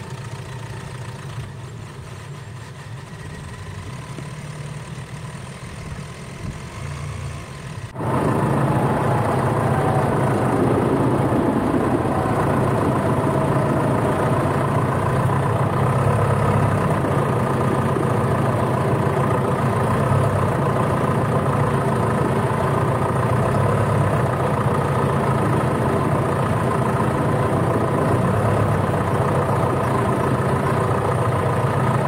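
John Deere tractor's diesel engine running steadily as the tractor drives with a log on its front loader. About eight seconds in the sound jumps suddenly louder and stays there.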